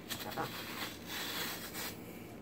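Metal squeeze-grip melon slicer working through watermelon flesh as a slice is gripped and lifted out: a soft, wet scraping lasting about a second.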